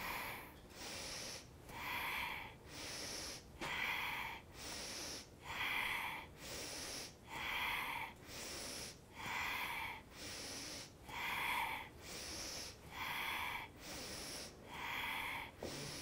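A woman breathing deep and rhythmically as she moves through seated spinal flexes. Each breath in and breath out is heard, a full breath about every two seconds.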